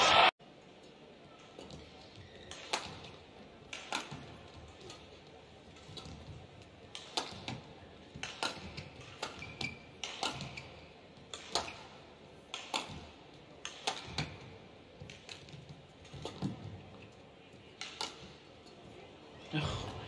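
Badminton rally: sharp smacks of rackets striking a shuttlecock, roughly one a second, each a short crack with a little hall echo.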